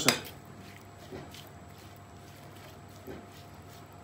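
Metal fork stirring chopped peppers and tomatoes dressed with oil and spices in a bowl: quiet, with a few light clinks and scrapes of the fork against the bowl.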